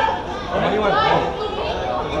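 Several people's voices overlapping, calling out and chattering, with no single voice standing out.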